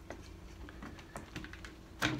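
Faint, irregular small clicks and rubbing as hands press the bead of a new rubber bicycle-type tire onto a 16-inch wheel rim.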